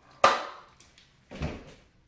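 Cup shooter fired: the pulled-back balloon is let go and snaps against the cup, launching a cotton ball, a single sharp snap. A duller knock follows about a second later.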